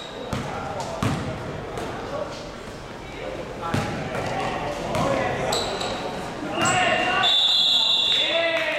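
A basketball bouncing in irregular thuds on a hard sports-hall floor, with players' shouts echoing around the gym. A referee's whistle sounds near the end, briefly once and then in a longer, louder blast.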